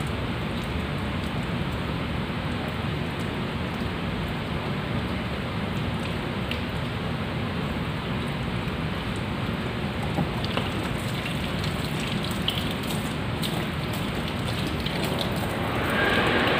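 Tap water running steadily and splashing into a sink.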